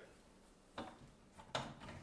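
A few faint clicks and knocks of hard plastic as the screw-on pump cap is twisted off a LifeSaver plastic jerrycan water filter.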